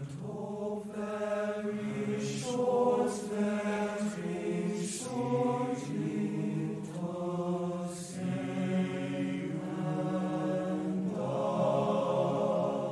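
Background music: voices singing slow, long-held notes in a choral or chant style, with sung words.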